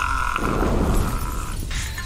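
A man's loud, drawn-out yell, harsh and distorted, for about a second and a half over the low bass of a drill beat. It gives way to a hissing noise near the end.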